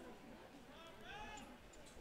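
Near-silent open-air field ambience, with a faint distant voice calling out in a couple of short rising-and-falling shouts about a second in.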